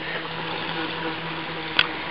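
Small motor of a radio-controlled boat running at a steady pitch, with one sharp click near the end.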